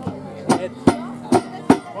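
Hammer strikes on a TFA hammer-box striking device, four sharp blows about 0.4 s apart in an even rhythm, each with a brief ringing tail.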